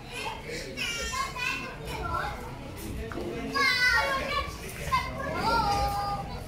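Children's high-pitched voices calling out and shouting at play, with the loudest burst a little over halfway through.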